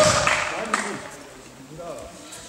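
Clapping and cheering from the watching teammates and spectators, with a few voices calling out, dying away within the first second.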